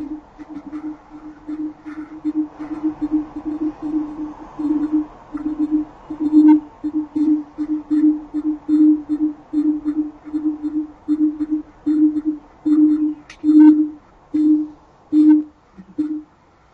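A low tone held on one unchanging pitch, pulsing on and off about twice a second at slightly uneven intervals.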